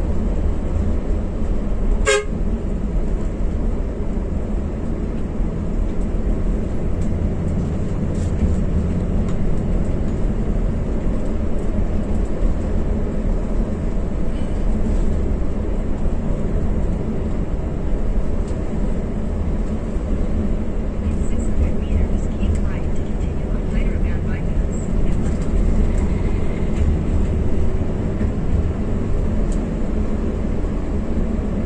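Steady low drone of an intercity coach's engine and tyres, heard from inside the driver's cab while under way. A brief horn toot sounds about two seconds in.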